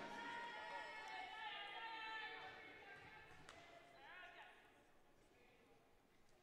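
Near silence in a gym: faint distant voices that fade out, with one faint knock about three and a half seconds in.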